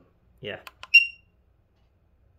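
Two light clicks, then a single short, loud, high-pitched beep from a Nosfet Aero electric unicycle as a button press steps its settings menu to the next item. The beep fades away quickly.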